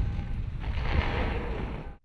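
Low rumble of a school bus blown apart by less than 10 pounds of homemade explosives, dying away after the blast. It fades and cuts off near the end.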